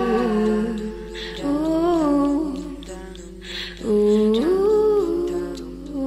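Wordless 'ooh' humming of a song melody in three phrases, with short pauses between them.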